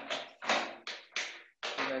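Four short, breathy puffs of a man's voice, each dying away quickly.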